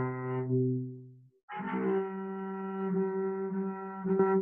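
Cello harmonics bowed one after the other: one sustained note fades out about a second in, then after a short break a second, higher harmonic sounds on the next string and is held. The two matching harmonics are played to check whether the strings are in tune with each other.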